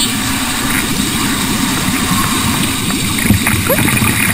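Water gurgling and bubbling as it floods into the cabin of a sinking car, with one sharp knock about three seconds in.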